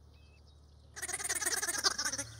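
A single wavering bleat from a goat or sheep, about a second long, starting about halfway in after a near-silent pause.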